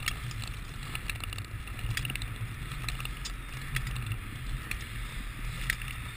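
Long-bladed speed skates stroking over black natural ice: steel blades scraping the ice, with irregular sharp clicks as strokes set down, over a steady low rumble.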